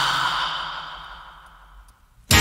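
A long breathy sigh with a low voice sliding down in pitch, drenched in reverb, trailing off to near silence by the end.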